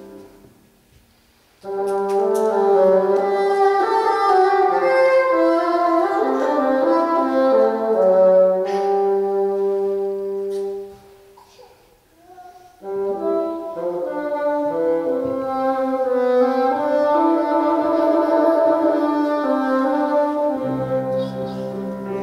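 Bassoon playing a slow, lyrical solo melody: after a short silence, two long phrases of held and moving notes with a brief pause between them.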